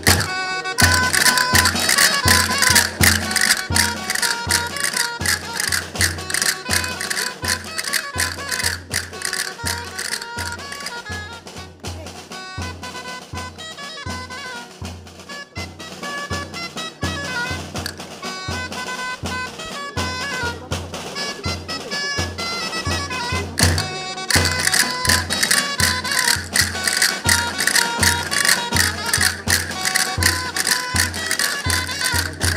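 A live band plays music for a traditional folk dance: a steady bass-drum beat under a brass and reed melody, with dense clicking over it. It goes quieter through the middle and comes back louder about twenty-four seconds in.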